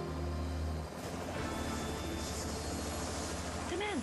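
Music with held low notes that stops about a second in, then the steady chopping noise of a helicopter's rotor and engine as it comes down to land.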